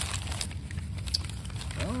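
Crumpled brown kraft paper wrapping crinkling in irregular rustles as hands pull it open.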